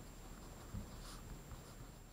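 Faint scratching of a Staedtler pen writing on a sheet of paper, in a few short strokes.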